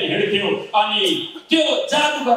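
Speech only: a man preaching through a handheld microphone in short, emphatic phrases.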